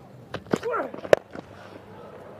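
A single sharp crack of a cricket bat striking the ball a little over a second in, over low ground ambience with a few fainter knocks before it.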